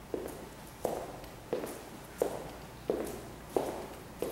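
Footsteps on a laminate floor: six steady steps, about two-thirds of a second apart.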